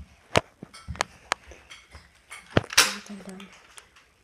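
A Nerf blaster being worked: a few sharp plastic clicks, then a short, loud puff as it fires about three-quarters of the way in.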